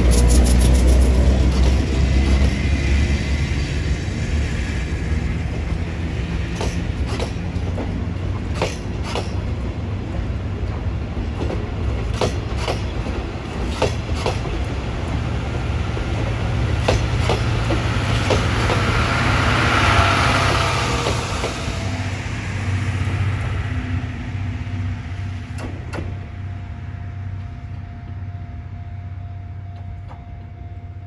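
Chichibu Railway Deki 108 electric locomotive and its 12-series coaches running past with a heavy rumble and repeated clacks of wheels on the rails. The sound swells, then fades away near the end while a steady high tone comes in.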